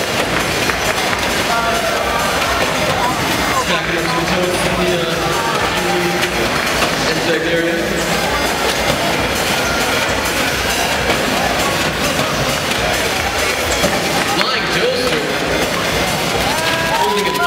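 Loud arena din: music playing over the public-address system, mixed with crowd chatter and voices echoing in a large hall.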